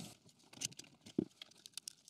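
Faint handling sounds of a laser engraver's module being lifted off its gantry mount: scattered small clicks and rattles, with one soft knock a little over a second in.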